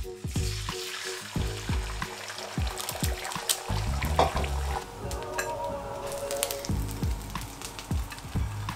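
Eggs tipped into a hot non-stick frying pan, sizzling steadily as they fry, under background music with a steady beat.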